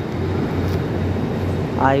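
Steady low drone of a Korail passenger train's diesel generator car running while the train stands at the platform.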